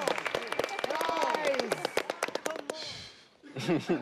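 Clapping from contestants and studio audience, with several voices calling out and laughing over it; the clapping dies away about three seconds in, and a voice laughs near the end.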